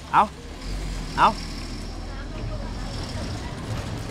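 A steady low engine rumble starts about half a second in and runs on, with a faint high whine above it. Two short spoken exclamations come near the start.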